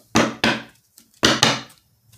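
A deck of oracle cards being shuffled by hand: four quick bursts of cards, in two pairs about a second apart.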